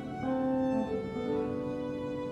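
Slow music on bowed strings: long held notes that shift to a new pitch three or four times.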